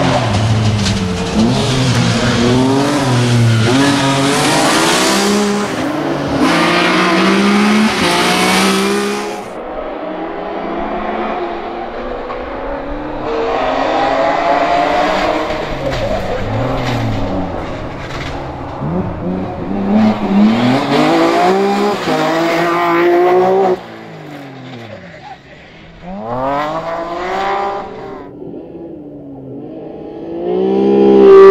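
Rally car engines accelerating hard through the gears as cars pass on the asphalt stage, the pitch climbing and dropping with each shift. The sound changes abruptly several times, about a third of the way in and again near the end.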